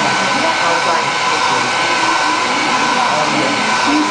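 Hair dryer running steadily: a loud, even rush of air with a steady whine on top.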